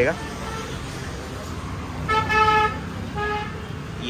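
A vehicle horn honks twice over a steady low rumble of street noise: a longer steady toot about two seconds in and a shorter one just after three seconds.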